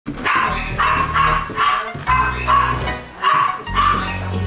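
Background music with a steady bass, over a dog barking repeatedly, about twice a second.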